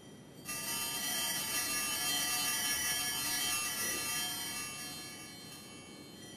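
Altar bells shaken in a continuous high, shimmering ring that starts suddenly about half a second in and fades over the last two seconds. The ringing marks the blessing of the people with the Blessed Sacrament in the monstrance at Benediction.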